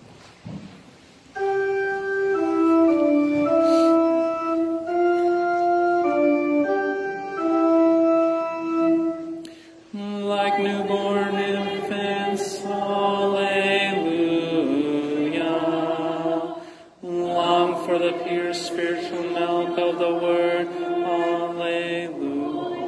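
Church organ plays the Introit melody as an introduction in steady held notes. About ten seconds in, the congregation joins, singing the Introit together with the organ, with a short pause for breath partway through.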